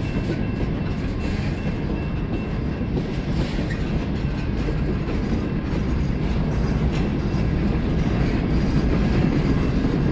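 Freight cars of a passing freight train rolling by close at hand: a steady rumble of steel wheels on the rails, growing a little louder near the end.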